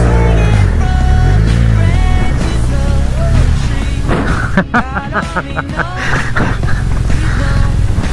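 A motorcycle engine revving up and down as the bike sets off in sand, under background music. The sound cuts off abruptly at the end.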